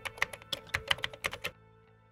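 Keyboard typing sound effect: a quick run of about a dozen key clicks that stops about a second and a half in, over soft background music.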